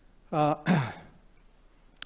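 A man's voice making two short wordless hesitation sounds through a microphone, the second falling in pitch.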